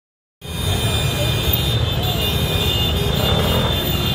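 Motor scooters running together in a slow convoy: a steady low rumble of engines and street traffic, starting a moment in.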